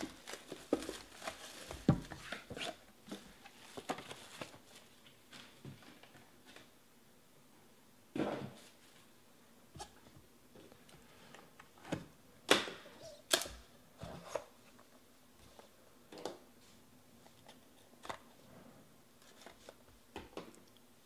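Plastic shrink-wrap being peeled and torn off cardboard trading-card boxes, then the boxes handled: rustling, cardboard scraping and light knocks, with a few sharper taps about eight, twelve and thirteen seconds in.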